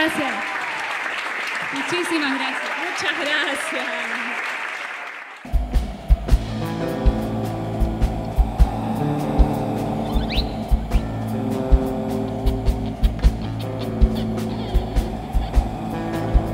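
Audience applauding and cheering after an a cappella song. About five seconds in it cuts off abruptly into recorded music with a steady kick-drum beat and bass.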